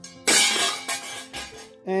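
A hard object set down with a sudden clatter about a quarter second in, followed by a ringing tail that fades over about a second.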